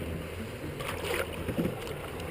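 Light splashing and lapping of river water beside a raft as a fish is let go from a landing net, over a steady low rumble. A few small splashes come about a second in and again shortly after.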